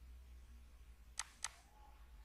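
Two sharp clicks of a computer mouse about a quarter second apart, over a faint low hum.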